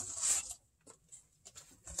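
Rustling of shrink-wrapped vinyl record sleeves and cardboard as records are handled, fading after about half a second into quiet with a few faint taps.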